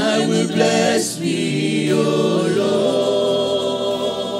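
A woman singing a slow worship song into a microphone with vibrato, over electronic keyboard accompaniment; the voice comes in loudly at the start.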